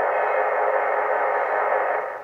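BITX40 40-metre SSB receiver kit giving a steady hiss of band noise through its speaker while tuned to lower sideband around 7.170 MHz, with no station coming through.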